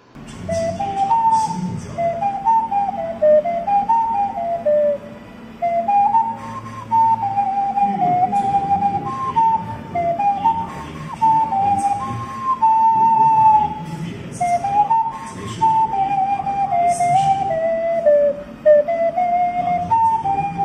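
A 3D-printed PLA xun, the Chinese egg-shaped clay-style vessel flute, being played: a slow melody of single held and stepping notes in several phrases with short pauses between them.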